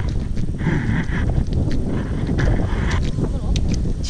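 Boots squelching and sucking in thick, wet flood mud with each step, over a low wind rumble on the microphone.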